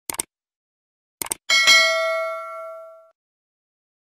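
Mouse-click and notification-bell sound effects of a subscribe animation: two quick clicks, two more about a second later, then a bell chime that rings out and fades over about a second and a half.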